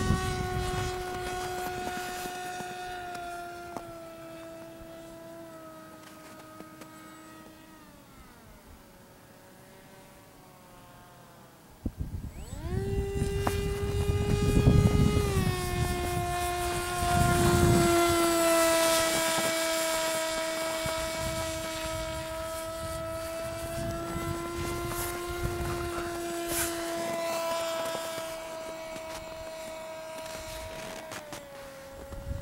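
HobbyZone Icon RC plane's electric motor and propeller whining as it flies: the pitch slides down and fades almost away about eight seconds in, then the whine comes back abruptly about twelve seconds in and holds fairly steady. Gusts of wind rumble on the microphone.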